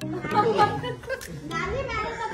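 Voices of a child and adults talking.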